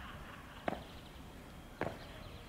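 Two sharp knocks about a second apart, the landings of trap-bar jump squats.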